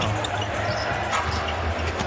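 Basketball arena sound during live play: a steady crowd murmur with a basketball bouncing on the hardwood court.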